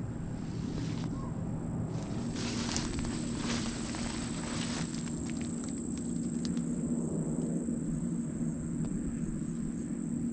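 Outdoor ambience: a steady low hum and a steady faint high whine, with brief rustling about two to five seconds in.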